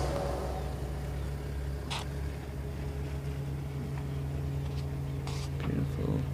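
A steady low motor hum over a rumble, with a couple of faint clicks, one about two seconds in and another near the end.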